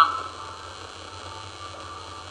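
Steady low mains hum under a faint hiss from the recording chain, after a man's voice trails off at the very start.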